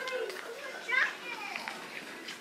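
A child's high-pitched voice calls out briefly twice, at the start and again about a second in, over faint background chatter.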